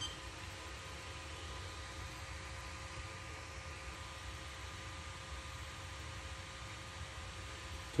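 Small 12 V cooling fan on a resistor bank's heatsink running steadily: a faint even hiss with a thin steady hum.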